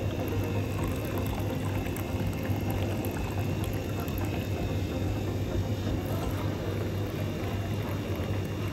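A hot milky drink poured in a thin continuous stream from a steel tumbler into a steel dabarah bowl, splashing and frothing as it lands, over a steady low hum.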